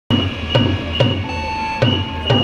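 A drum-like beat of evenly spaced knocks, about two a second, with a steady high-pitched tone running under it and a second, lower tone joining about halfway through.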